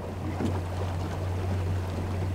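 A boat's motor running with a steady low hum as the boat moves slowly.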